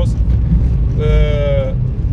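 Steady road and engine rumble inside a car driving through a road tunnel. Over it, a man gives one drawn-out hesitation sound, 'eee', lasting under a second and dropping slightly at its end, just past the middle.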